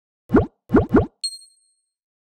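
Logo-animation sound effect: three quick pops, each rising in pitch, followed by a bright, high ding that rings for most of a second.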